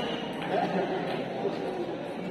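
Indistinct voices and chatter of spectators in a large indoor hall, with faint scattered clicks.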